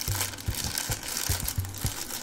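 Thin clear plastic bag crinkling and crackling as fingers squeeze and pull at it, in irregular small crackles.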